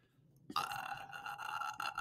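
A man's held hesitation sound, a drawn-out "uhh", starting about half a second in after a moment of silence and lasting about a second and a half.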